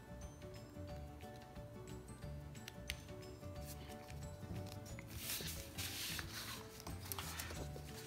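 Soft background music with a repeating bass pattern, under faint snips of scissors cutting heavy cover-stock paper and light clicks of handling. There is a brief paper rustle about five seconds in.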